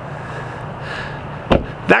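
A steady low hum under outdoor background noise, with one sharp knock about one and a half seconds in.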